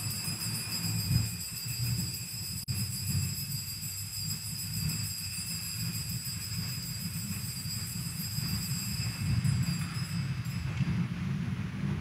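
Altar bells ringing continuously as the consecrated chalice is elevated, which signals the consecration at Mass. They give several steady high tones over a low rumble and stop about a second before the end.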